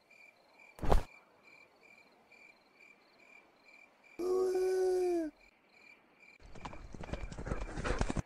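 Cartoon sound effects over a steady, faintly pulsing cricket chirp: a single sharp hit about a second in, a held cry lasting about a second that drops slightly at its end about four seconds in, then rapid clattering scuffle sounds near the end.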